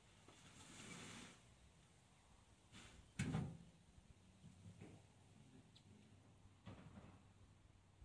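A wheelbarrow load of compost tipped onto the lawn: one dull thud about three seconds in, then a few faint knocks as the barrow is handled.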